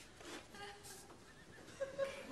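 Faint, scattered studio-audience laughter and chuckles, swelling again just before the end.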